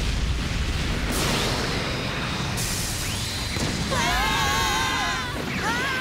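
Cartoon explosion and fire sound effect: a sustained low rumbling blast. About four seconds in, high wavering pitched tones cut in twice, the second just at the end.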